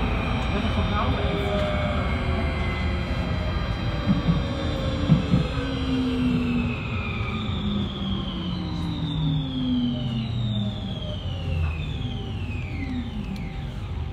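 Amsterdam metro train braking into a station: the whine of its electric drive falls steadily in pitch as the train slows, over the rumble of the wheels, and drops away quickly in the last seconds as it comes to a stop.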